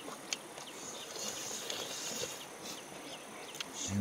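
Insects chirping in the forest, a steady high-pitched drone with a few faint ticks through it.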